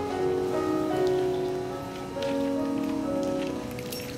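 A keyboard instrument playing a short passage of held notes that change every second or so, over faint scattered rustling and ticking in a reverberant hall.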